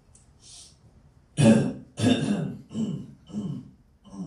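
Someone clearing their throat and coughing: a short breath, then four short voiced bursts in the second half.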